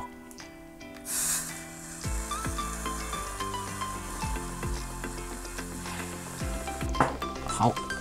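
Hot ALIENTEK T80 soldering iron tip held in water, sizzling as it boils the water under full heating power. The hiss is loudest about a second in.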